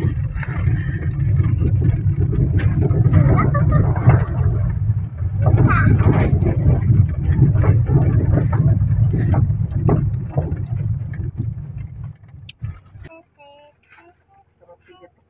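Low rumble and scattered knocks inside a car driving slowly over a narrow, rocky village road. The rumble stops abruptly near the end.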